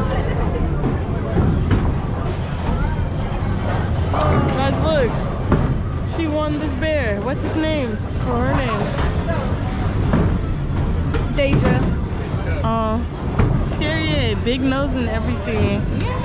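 Music with a singing voice, the pitch wavering in long held notes, over the chatter of a busy room and a steady low rumble.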